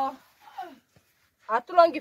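A woman's voice speaking in short bursts with pauses between.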